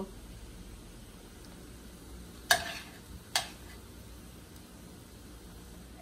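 A serving utensil knocks twice against the dishes, about a second apart, as cooked food is scooped onto a plate. The first knock is the louder, over a faint steady background.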